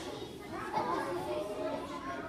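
A crowd of seated schoolchildren murmuring and chattering, many overlapping voices with no single clear speaker.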